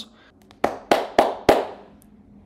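Four hand claps, about three a second, each with a short ring-out in a small room.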